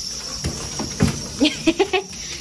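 A person laughing in a quick run of short bursts from about one and a half seconds in, with a dull knock just before. A steady high insect chirring runs underneath.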